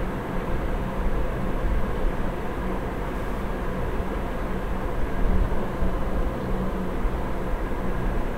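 Steady background noise: a low hum with a hiss over it, unchanging and with no distinct events.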